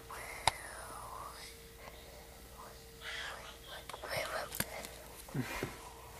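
Soft whispering, with a couple of sharp clicks.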